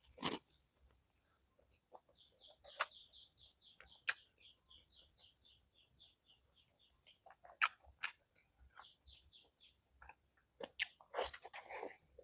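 Close-miked eating sounds: sharp wet mouth clicks and smacks from licking fingers and chewing egg, with a denser stretch of chewing and biting near the end. Behind them, a faint run of short high chirps repeats about four to five times a second from about two seconds in until near the end.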